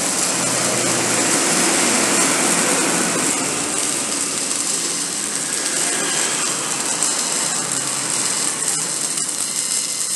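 Electric arc welding on steel: the arc crackles and hisses steadily while a bead is laid, with a few sharp pops in the last few seconds.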